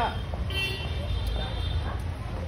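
Steady low rumble of outdoor street background with faint distant voices. About half a second in comes a brief shrill tone made of several high pitches.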